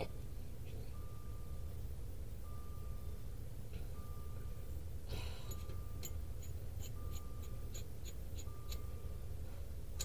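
2004 Jaguar S-Type's warning chime, one tone repeating about every second and a half, sounding because the ignition is left on. About five seconds in there is a short scrape, and a few light clicks of parts being handled follow it.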